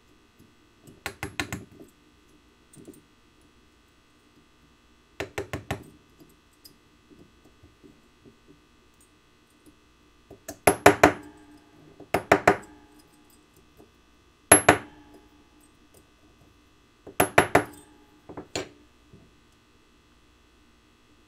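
Hammer striking a steel dapping punch seated in a steel dapping block, cupping the flattened ends of a copper wire. The blows come in about seven short runs of three to five quick taps, each tap clinking metal on metal with a brief ring.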